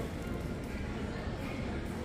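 Steady background murmur of an indoor mall food court, with no distinct sound standing out.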